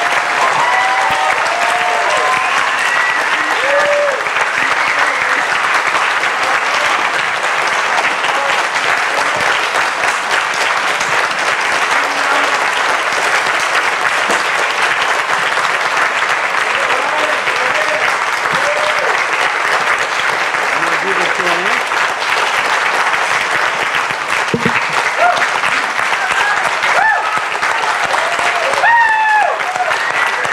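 A large audience applauding without a break, with a few voices calling out about a second in and again near the end.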